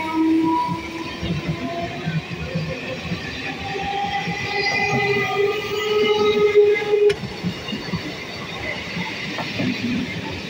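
Conventional EMU local train running past at close range: a steady rumble and rattle of wheels on rail, with high-pitched squealing tones that shift in pitch over it, loudest a little past the middle.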